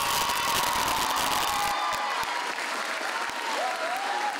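Audience applauding, the clapping densest in the first couple of seconds, with a few voices calling out over it.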